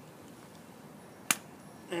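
A single sharp click about a second in, as the lead from a small DC motor is touched to a 6-volt battery; otherwise faint background.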